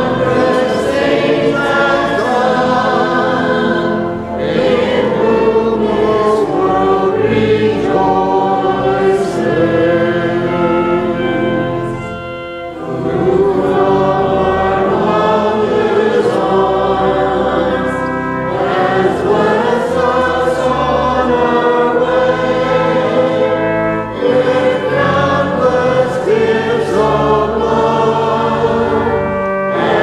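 A group of voices singing a hymn together in long held phrases, with brief breaks between phrases.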